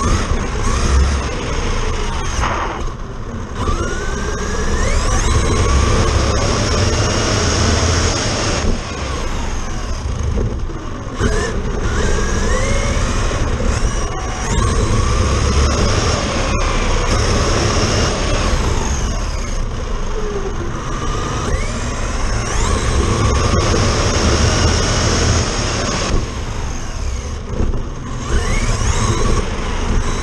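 Onboard sound of a Traxxas Slash RC truck running on a 4S battery: the electric motor and gears whine up and down in pitch with the throttle, over wind rush and tyre noise on the pavement. The whine backs off and drops away briefly a few times.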